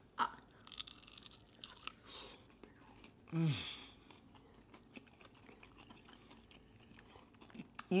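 Faint crunching and chewing of crispy air-fried chicken wings, with a short appreciative 'mm' about three and a half seconds in.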